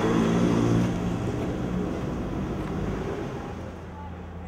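A motor vehicle's engine passing in street traffic, loudest in the first second and then fading away.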